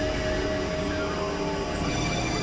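Dense experimental electronic drone of several music tracks layered together, with sustained steady tones over a noisy wash. A new set of high tones comes in near the end.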